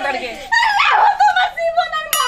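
A woman's voice crying out in a high, wavering wail.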